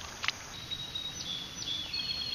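Outdoor ambience with a steady background hiss and a short click just after the start. From about half a second in, a thin, high-pitched steady call runs on, stepping a little up and down in pitch.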